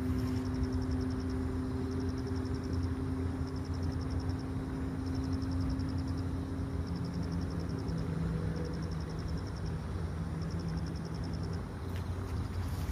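Steady low hum of engine or machinery noise, with a high insect trill in repeated bursts about a second long.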